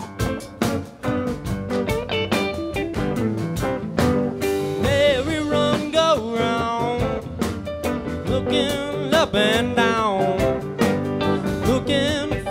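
Live rock band playing: electric guitars, bass, keyboards and drums. From about four seconds in, a lead line of bending, wavering notes rises above the band.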